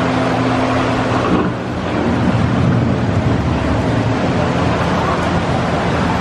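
Ride boat gliding through the attraction's show scene: a steady rushing, watery noise with a low hum that breaks off about a second in.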